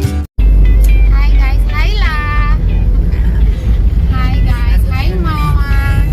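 A strummed acoustic-guitar tune cuts off a third of a second in. The car's interior rumble follows, steady and deep, with voices over it.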